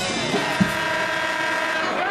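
A loud horn blast, a held chord of several steady tones, sounds over arena crowd noise, starting a moment in and stopping just before the end.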